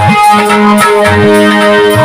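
Music on an electronic keyboard with an organ-like sound: long held chords over short, regular drum thumps.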